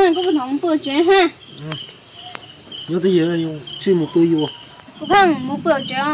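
Night insects such as crickets chirping in a rapid, even pulse. A voice speaks over it near the start and again about halfway through.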